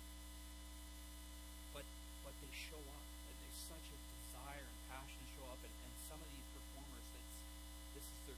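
Steady, low electrical mains hum, with faint, indistinct speech coming through now and then.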